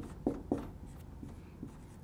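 Dry-erase marker writing on a whiteboard: a few short strokes of the felt tip rubbing across the board, faint against the room.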